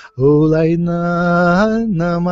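A man singing a healing chant in wordless syllables, holding one long low note that begins a moment in, lifts in pitch briefly near the end and settles back.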